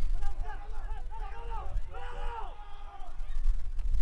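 Distant shouting voices calling out across an open-air soccer pitch, over a heavy low rumble of wind buffeting the microphone.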